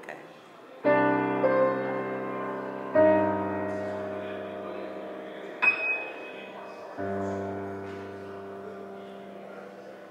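Piano chords played one at a time, struck about a second in, about three seconds in and about seven seconds in, each held and left to fade, with a brief click in between.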